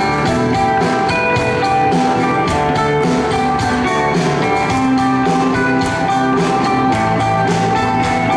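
Indie rock band playing live: electric guitars ringing over bass and drums with a steady beat, an instrumental passage without vocals.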